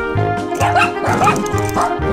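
Three short dog barks, dubbed over background music with a steady beat.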